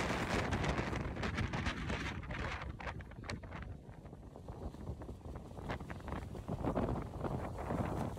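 Strong wind buffeting the phone's microphone: an uneven, gusting low rumble with a few crackles in the first half.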